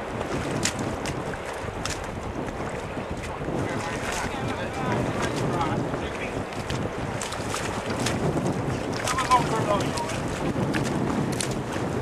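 Wind buffeting the microphone, a steady rough rumble with scattered clicks, with faint voices calling now and then.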